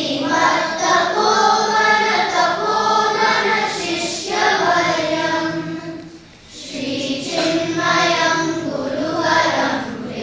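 A large group of children chanting a Sanskrit sloka in unison, a melodic recitation in held notes with short breaks between phrases, the longest about six seconds in.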